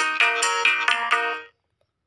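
Synthesized keyboard notes from the ORG 2021 Android organ app: a quick run of pitched notes, about five a second, that stops about a second and a half in. They sound the A minor chord that has just been set on a one-key chord.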